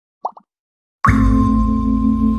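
Logo intro sound effect: two quick short pops, then about a second in a sudden deep ringing tone with a slow wavering pulse that holds and slowly fades.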